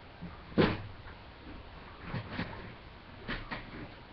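A few short knocks and creaks as a person settles onto an office chair, the loudest about half a second in and a couple more pairs later.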